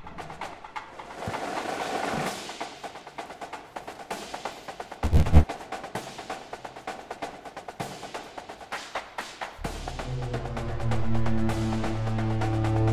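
Film score: rapid clicking percussion runs throughout. A deep hit comes about five seconds in, and near the end a low sustained drone with held tones swells in.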